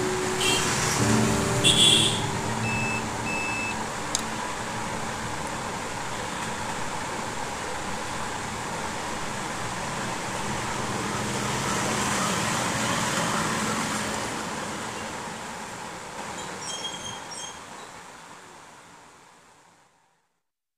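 Steady rushing background noise, like distant traffic, with a few faint steady tones in the first two seconds, fading out gradually to silence over the last several seconds.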